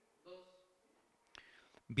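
Faint, low snatches of a voice, with a single sharp click about a second and a half in; right at the end a man starts speaking loudly into a microphone.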